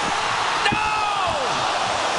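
Ice hockey arena crowd roaring through a two-on-one scoring chance, with one sharp impact of the shot about two-thirds of a second in.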